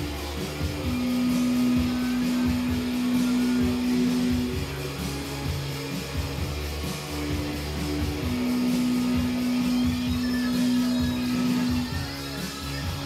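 Live band music led by guitar over a steady rhythm, with a low sustained note held twice for about three and a half seconds each time.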